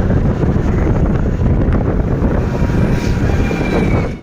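Wind buffeting the microphone of a camera carried on a moving vehicle, a loud, gusty rumble over road and traffic noise.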